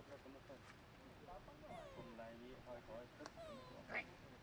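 Faint, short high-pitched coos and squeaks from macaques: many brief calls that rise and fall in pitch, some overlapping, with a sharp click a little past three seconds in.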